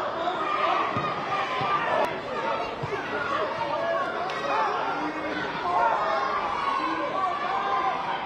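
Several voices talking and calling out over one another during live football play, with two brief sharp knocks about two and four seconds in.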